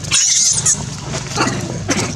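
A macaque screaming: a harsh, high shriek in the first half second, then two short cries later on.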